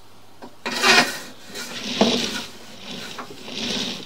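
Scraping and rubbing from a sewer inspection camera's push cable and head being fed down a drain line, in three noisy bursts with a sharp click about two seconds in; the loudest burst comes about a second in. A steady low electrical hum runs underneath.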